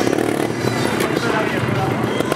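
Sherco trial motorcycle engine running as the rider balances the bike on a rock, mixed in with background music and a voice over the arena sound.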